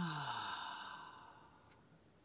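A person sighing out loud: a voiced 'haah' that falls in pitch and trails off into a breathy exhale, fading away after about a second and a half.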